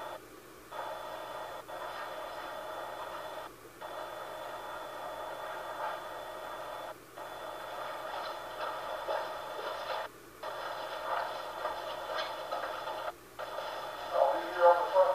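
Steady static hiss with faint steady tones from a handheld video monitor's small speaker, cutting out for a moment about every three seconds.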